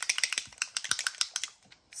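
A mixing ball rattling inside a small bottle of Distress Foundry Wax as the bottle is shaken to mix the contents. It makes a rapid run of sharp clicks that stops about one and a half seconds in.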